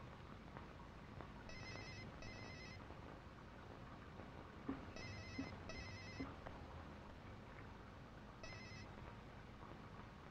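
Mobile phone ringing faintly with an electronic trilling ringtone, in two pairs of short rings and then a single shorter ring near the end.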